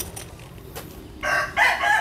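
A rooster crowing, a loud, high-pitched call that starts just over a second in.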